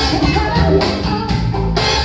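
Live band playing with a steady beat: drum kit, bass, electric guitar, keyboards and horns, with singing over it.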